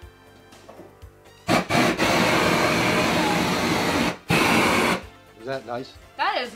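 Handheld propane torch blasting its flame with a loud, steady hiss, starting about a second and a half in and stopping at about five seconds, with a short break just after four seconds. The torch is being used to melt the cheese on a tuna melt.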